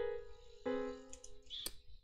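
MuseScore's piano sound playing back chords from a score: two sustained chords, the second starting about two-thirds of a second in. A few short clicks follow near the end as playback is stopped.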